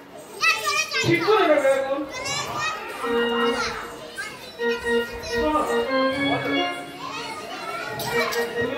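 Gajon folk-theatre performance: a high-pitched voice shouts and calls out over the first couple of seconds, then an accompanying instrument plays a melody of short held notes with voices going on over it.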